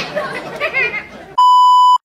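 Brief voices and laughter, then about a second and a half in, a loud steady high-pitched test-tone beep, the tone that goes with TV colour bars. It cuts off abruptly.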